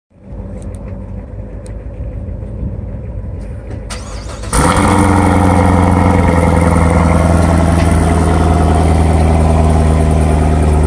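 2017 Chevrolet Corvette Grand Sport's 6.2-litre V8 starting about four and a half seconds in: the sound jumps suddenly louder, then settles into a loud, steady idle from the quad exhaust. A quieter rumble comes before it.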